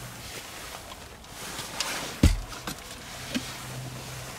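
Soft handling sounds of a cup and plastic drink bottle inside a car: a few light clicks and one dull thump a little past halfway. A low steady hum comes in just after the thump.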